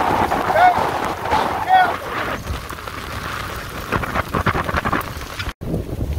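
Heavy rain pouring down on an open boat under way, with rain and wind noise on the microphone. A man's voice sounds briefly twice in the first two seconds, and the sound drops out for an instant near the end.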